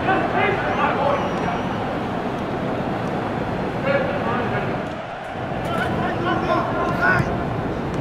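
Indistinct distant voices calling out over a steady background noise, with no clear words.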